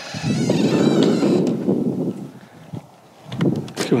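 Old wooden plank door creaking as it swings open on its hinges, a rough wavering creak for about two seconds, followed by a few light knocks near the end.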